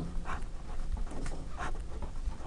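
Felt-tip marker scratching on paper in several short, quick, faint strokes as arrows and zeros are drawn.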